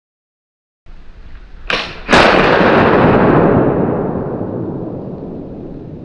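Flintlock muzzleloading rifle firing: a short sharp snap of the lock and priming flash, then about half a second later the main black-powder charge goes off with a loud shot that dies away slowly in a long echo.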